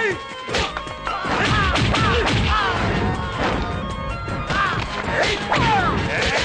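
Movie fight sound effects: a rapid run of punch and whack hits with short yells and cries from the fighters, over background music. Shouts of "hey!" come near the end.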